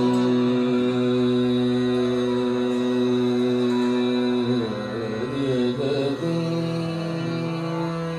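Hindustani classical singing in Raag Yaman: a male voice holds one long steady note, doubled by harmonium over a tanpura drone. About four and a half seconds in he moves through a short ornamented phrase, then settles on a new held note about six seconds in.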